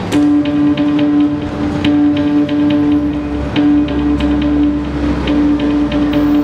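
Electronic dubstep/drum-and-bass backing track starting up: one held mid-pitched note pulsing with short gaps over a regular beat of sharp clicks, with a deep bass coming in about three seconds in.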